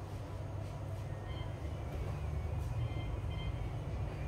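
A steady low rumble of background noise, with a few faint, brief high tones about a second and a half in and again around three seconds.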